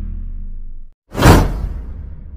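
Outro sound effects: a low rumbling music tail fades and cuts off just before a second in, then a loud whoosh transition effect swells and dies away.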